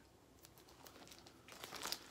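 Faint crinkling of a laserdisc's clear plastic sleeve as the disc is slid back into its jacket, growing a little louder near the end.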